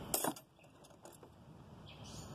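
Brief metallic clinking and rattling of hand tools as one is taken from a tool bag of wrenches and spanners. It sounds in the first moments, then near quiet with a faint click a little over a second in.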